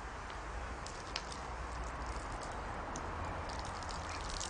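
Steady outdoor background noise with a low rumble and a few faint, short ticks, one about a second in and several more near the end.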